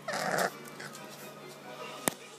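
English bulldog puppy giving one short cry, about half a second long, right at the start.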